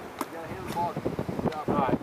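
Faint voices of people on an open field with wind noise on the microphone, and a few light knocks.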